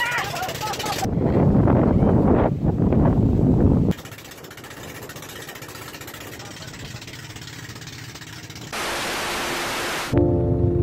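A woman shouts excitedly at the start. Then comes loud rushing noise aboard a moving outrigger boat, which drops to a quieter steady rush about four seconds in and turns to a brighter steady hiss near the end.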